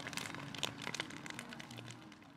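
Bonfire crackling with irregular sharp snaps, fading away near the end.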